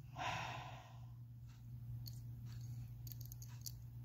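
A woman's deep breath let out through the open mouth, a breathy exhale lasting about a second, followed by a few faint clicks.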